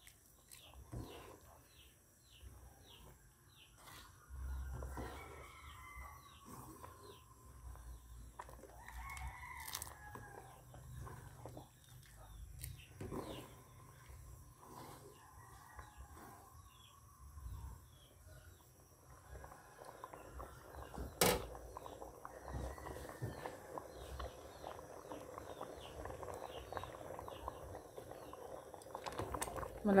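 Roosters crowing in the background several times in the first half. A spatula stirs and scrapes thick chocolate rice porridge (champorado) in a metal pot, the stirring getting louder in the last third, with one sharp knock against the pot.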